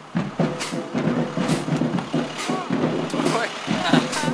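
People's voices chattering over the steady running of an idling school bus engine, with sharp clicks about once a second.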